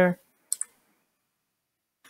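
Two quick computer keyboard keystrokes, sharp and high-pitched, about a tenth of a second apart.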